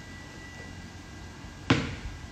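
A basketball bouncing once on a concrete court, a single sharp bounce near the end, with low outdoor background hiss.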